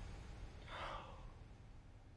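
A person's single breathy sigh about half a second in, falling away, over faint room tone.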